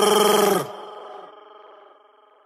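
The end of a recorded Latin urban song: a final sustained note stops about two-thirds of a second in, and its echo fades out toward the end.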